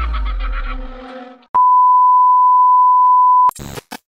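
Music fading out, then a single steady electronic beep lasting about two seconds, cut off by a short burst of noise.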